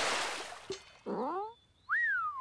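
Cartoon sound effects: a water splash fading out over the first second, then a short rising pitched glide, a brief gap, and a whistle-like tone that rises and then slides down near the end.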